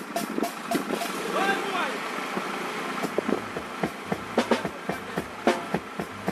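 Vehicles moving slowly over a rough, potholed road, with irregular clicks and knocks and faint voices; a low engine hum comes in about halfway.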